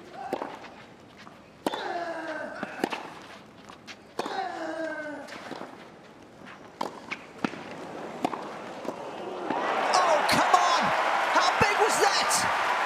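A clay-court tennis rally: sharp knocks of racket strikes and ball bounces, two of them followed by a player's long, falling grunt. Then the crowd breaks into cheering and applause about ten seconds in.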